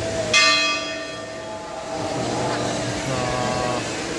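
A metal temple bell struck once, a sharp ring with many high overtones that dies away over about a second and a half.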